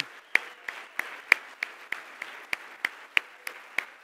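A single person's hand claps close to the microphone, sharp and evenly paced at about three a second, over a softer wash of audience applause.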